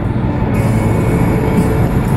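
Steady road and engine noise inside the cabin of a moving car, a low, even rumble.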